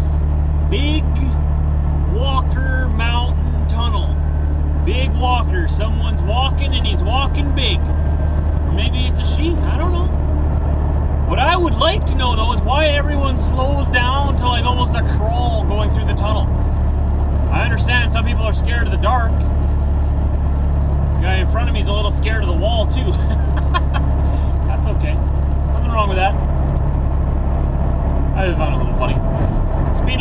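Steady low drone of a semi-truck's engine and tyres at highway speed, heard inside the cab with the windows down. A voice-like sound with short rising and falling pitch glides comes and goes over it.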